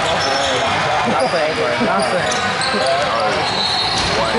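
Basketball game in a large gym: a ball bouncing on the wooden court and sneakers squeaking, under a steady babble of spectators' voices and calls.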